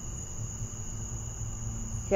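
Crickets trilling in one steady, unbroken high note, with a low hum underneath.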